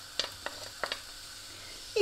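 Diced onion sizzling in hot oil in a frying pan, with a few sharp taps of a wooden spatula scraping the onion off a plate in the first second.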